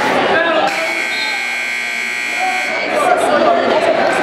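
Match timer buzzer sounding one steady tone for about two seconds, starting just under a second in.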